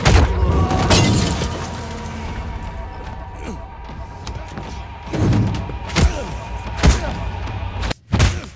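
Fight-scene sound effects: a loud crash right at the start, then heavy punches landing, three in quick succession near the end, with a man's grunts and groans over a film score.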